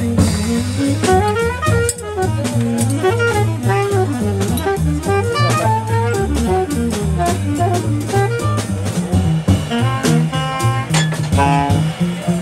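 Live jazz combo: a saxophone solos in quick flowing runs over a walking double bass and a drum kit, with cymbals played steadily throughout.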